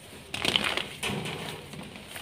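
Two blocks of soft homemade gym chalk crushed in gloved hands, crumbling with a crisp crunching crackle: a first burst about a third of a second in, and a second, fading one about a second in.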